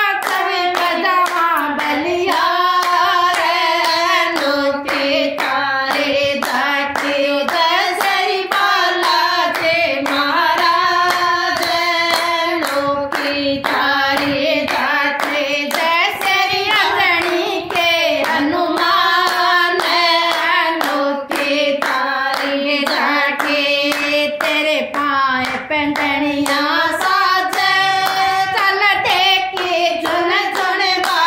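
Group of women singing a devotional bhajan in unison, keeping time with a steady rhythm of hand claps.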